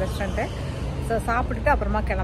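A woman talking, over a steady low rumble of street traffic.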